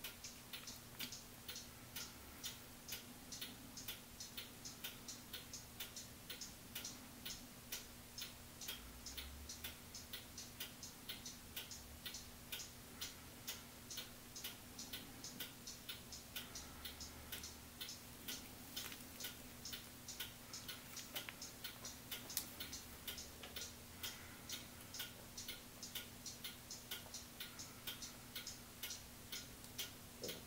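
Faint, steady, regular ticking, about two ticks a second, like a clock, over a low steady hum.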